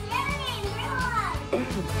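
A young boy laughing over light background music.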